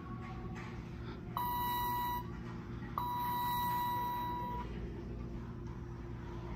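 Two electronic beeps from a ThyssenKrupp hydraulic elevator's signal, a short one about a second and a half in and a longer one about three seconds in, each a steady high tone, as the car arrives at the floor.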